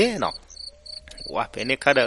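Crickets chirping steadily in the background under a narrating voice, heard on their own in a short pause in the speech about half a second in.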